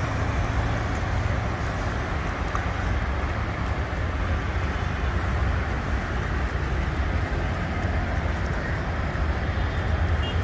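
Steady low rumble of road traffic, continuous and without clear individual events.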